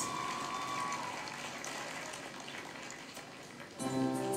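Faint audience applause from the concert broadcast, slowly fading, with pitched music starting near the end.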